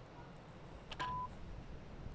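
A sharp click of a putter striking a golf ball about a second in, followed at once by a short electronic beep at one steady pitch.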